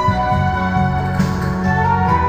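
Karaoke backing track of an enka ballad playing its instrumental ending, with sustained melody notes over a steady bass and no singing.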